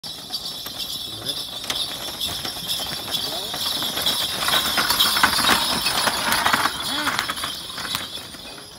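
A pair of racing water buffalo galloping past with a jockey's cart, a rapid run of hoof knocks on packed dirt mixed with the cart's rattling, loudest about halfway through as they go by. Voices call out alongside.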